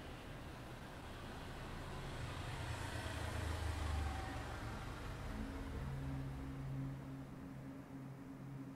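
A passing vehicle: a low rumble and rushing noise that builds to a peak about four seconds in and then fades. A low steady hum comes in after about five seconds.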